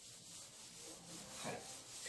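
A handheld eraser rubbing across a whiteboard to wipe off marker writing. The rubbing is faint and grows louder toward the end.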